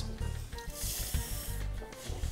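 Dry red lentils sliding out of a glass bowl into a pot of liquid, scraped along by a spatula, with a soft hiss for just under a second about midway through. Quiet background music runs underneath.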